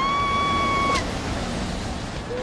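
Cartoon sound effects: a whistling tone that swoops up and holds steady for about a second before cutting off, over a steady rushing noise.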